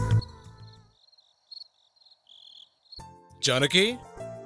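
Sad background score that fades out within the first second, then near silence with faint, evenly repeated high chirps like a cricket. About three seconds in, a loud musical sting with a sweeping whoosh plays, a television scene-change cue.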